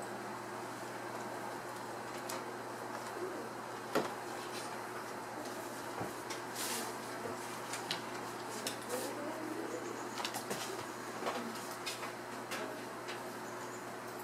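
Quiet room tone with a steady low hum and scattered soft taps and rustles, one sharper tap about four seconds in.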